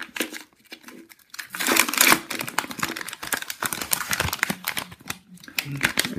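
Milka chocolate bar's purple outer wrapper and white inner wrapping being peeled open by hand, crinkling in irregular bursts that start about a second and a half in.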